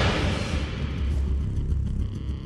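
Low, steady rumble of a suspense film soundtrack, with the fading tail of a loud whoosh at the start.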